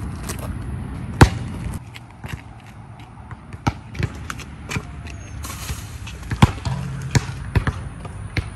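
Basketball bouncing on an outdoor concrete court during warm-up shooting and dribbling: a series of sharp, irregularly spaced thuds, the loudest about a second in.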